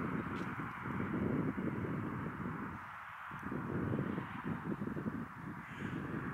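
Wind buffeting the microphone: a low, rumbling noise that rises and falls in gusts, easing off briefly about halfway through.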